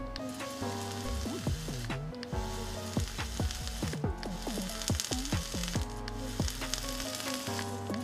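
Rebuildable dripping atomizer's 0.2-ohm coil firing at 75 watts, the e-liquid on the cotton wick sizzling and crackling with many small pops as it boils off into vapour. Background music plays underneath.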